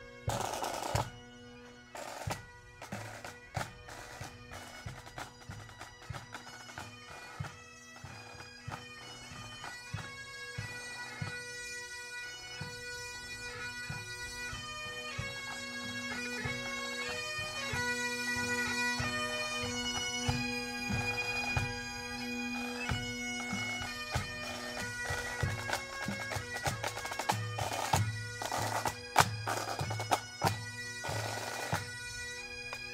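Pipe band playing: Highland bagpipes sounding steady drones under the chanter melody, with snare and bass drums beating along. The pipes build from fairly quiet to loud over the first half, and the drumming is heavier near the end.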